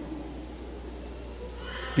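Pause in amplified speech: a steady low hum from the microphone and sound system, with the room's echo of the voice dying away at the start. A faint hiss, such as an intake of breath, comes just before speech resumes near the end.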